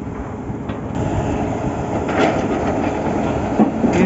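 Borewell drilling rig machinery running with a loud, steady noise, with a couple of short metallic knocks standing out.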